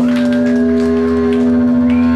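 Punk rock band playing live, holding one long amplified note that stays dead steady in pitch. A deeper bass note comes in about half a second in, with faint cymbal hits.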